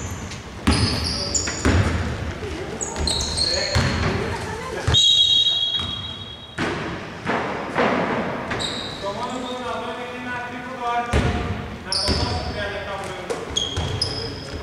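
A basketball bouncing on a hardwood court and sneakers squeaking in short, high chirps as players move, with players calling out to each other, all echoing in a near-empty indoor arena.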